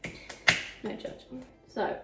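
A single sharp snap about half a second in, after a fainter click at the start, followed by brief voice sounds.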